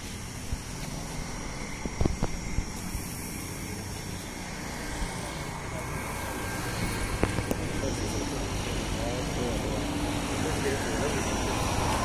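Indistinct murmured talk among a small gathered group over a steady low rumble, with a few sharp clicks about two seconds in and again about seven seconds in.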